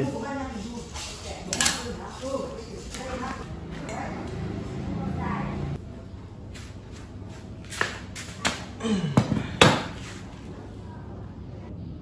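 Metal knocks and clanks on a tiled floor, with a cluster of louder ones near the end, as a steel front-axle tube is handled and laid down.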